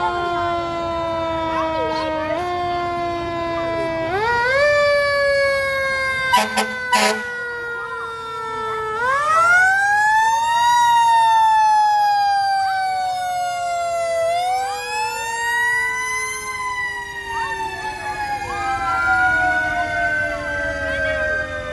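Fire engine siren wailing: it winds up in pitch, then slowly falls, with big wind-ups about nine and fourteen seconds in and another near the end. About six seconds in, two or three short loud blasts cut through.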